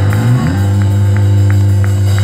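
Live rock band with electric guitars and bass holding a loud, sustained distorted chord. A low note slides upward about a third of a second in, and a light tick sounds about three times a second over it.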